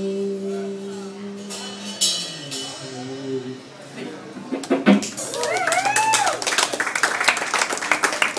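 The last held note of a live acoustic song rings out and fades. About five seconds in, a small audience starts clapping, with a rising-and-falling whoop.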